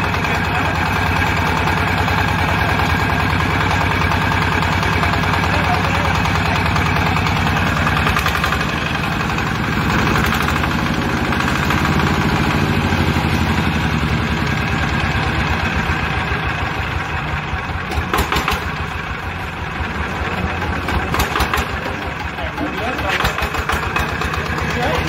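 Small single-cylinder horizontal diesel engine running steadily with no load, with a rapid low chugging beat. A few sharp clicks come near the end.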